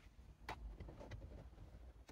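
Faint handling of a fabric neck pillow being fitted onto a car seat's headrest, with one soft click about half a second in and a few lighter ticks after it.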